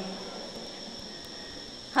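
A pause in speech: faint room noise with a steady high-pitched whine running under it.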